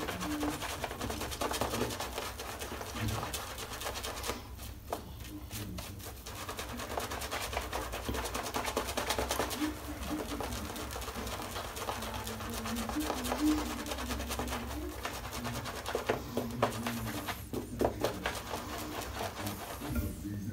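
Two-band finest badger shaving brush working soft shaving cream into a lather on a stubbled face: a continuous wet crackling and squishing, with two short lulls about four and sixteen seconds in. The shaver suspects the lather holds too much water.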